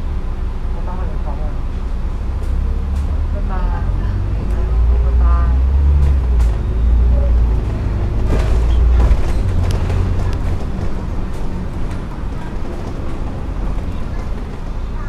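Double-decker bus engine and drivetrain heard from inside the upper deck as the bus drives off, a deep rumble that swells louder between about four and nine seconds in, with light clicks and rattles from the body.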